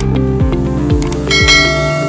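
Electronic background music with a steady kick-drum beat, with a couple of sharp clicks. About 1.3 s in, a bright bell chime rings out over it and fades: the notification-bell sound of a subscribe-button animation.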